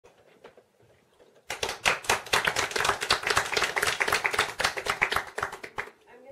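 Small audience applauding: a sudden start of clapping about one and a half seconds in, steady until it dies away just before the end.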